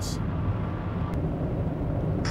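Steady low rumble of a car's road and engine noise heard from inside the moving car.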